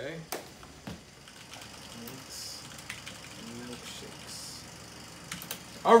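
A few scattered clicks of computer keyboard keys: a couple near the start and a quick cluster of three just after five seconds, with faint mumbling in between.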